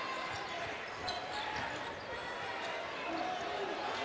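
Live college basketball game sound: a steady crowd murmur in a large arena, with a ball being dribbled on the hardwood court.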